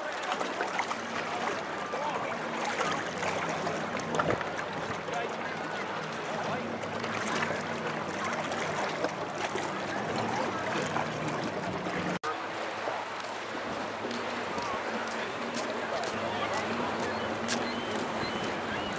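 Outdoor waterside ambience: indistinct chatter of people along the pier over the wash of water against the breakwater rocks.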